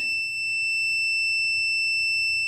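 Multimeter continuity buzzer sounding one steady high-pitched tone: the normally closed boost-cut pressure switch is still making contact while the air pressure is raised.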